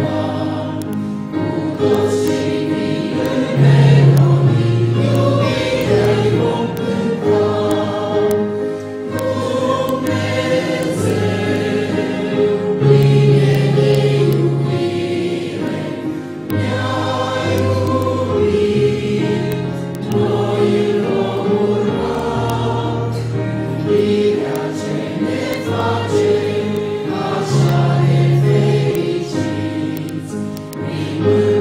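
Church congregation singing a hymn together in chorus, in long held notes over a steady low line.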